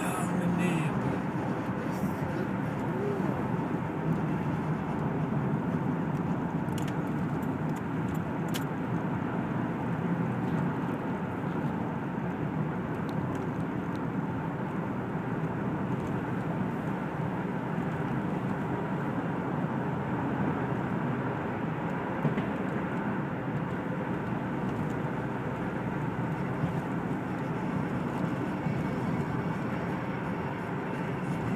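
Steady road and engine noise of a car driving through a road tunnel, heard from inside the cabin.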